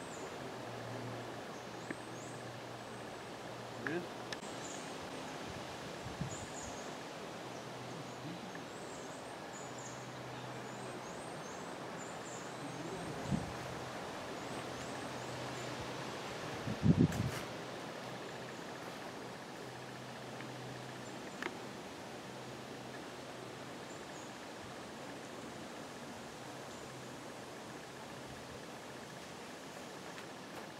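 Quiet ambience with faint, repeated high chirps through the first half and a low steady hum, broken by a few dull thumps about halfway through.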